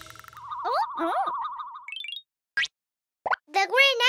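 Cartoon sound effects: a warbling, wavering tone with short gliding chirps, then a near-silent gap broken by two short blips. Near the end comes a rising-and-falling babble from a baby character.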